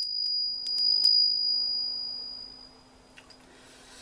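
Small brass hand bell rung with a few quick clapper strikes in the first second, its high clear ring fading away over the next two seconds.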